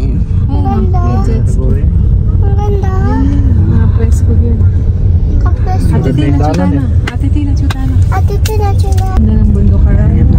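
Steady low road and engine rumble inside a moving car's cabin, with people talking over it.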